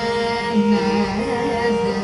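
Live Indian classical music: a steady tanpura drone, joined about half a second in by a slow melodic line that slides and curls between notes in the Carnatic manner.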